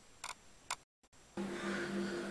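Two short clicks about half a second apart. After a brief dead gap, a steady low electrical hum sets in.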